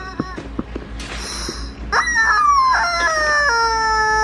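Screaming rubber chicken dog toy being squeezed: a short rush of air, then a long, loud, wailing squawk that steps down in pitch over about two seconds.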